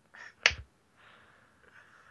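A single short, sharp snap or click about half a second in.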